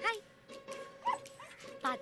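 A beagle barking a few short times, mixed with a woman's voice.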